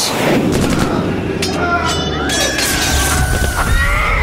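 Dense layered action sound effects: rumbling booms and crashes, with a held high tone over the second half.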